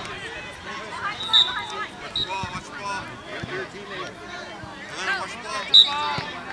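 Children and adults calling out and talking across an open field during a youth soccer game, with brief high-pitched sounds about a second in and again near the end.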